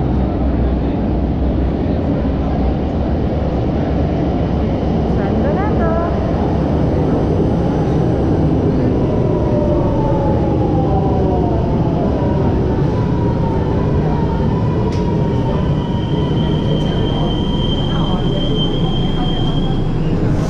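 Milan Metro train running into the station: a loud, heavy rumble as the train comes in along the platform, with whines falling in pitch as it slows. A high, steady squeal sounds over the last few seconds as it comes to a stop.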